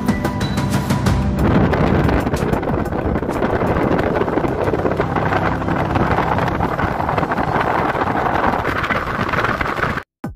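Music, then from about a second and a half in, loud steady wind and road noise from a moving vehicle, with the music still faintly under it.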